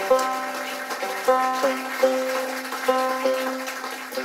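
Banjo being retuned: single strings plucked one after another, about every half second, a few notes bending slightly in pitch as a tuning peg is turned.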